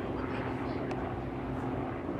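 Republic P-47D Thunderbolt's Pratt & Whitney R-2800 radial engine and propeller running steadily as the fighter pulls up and passes overhead.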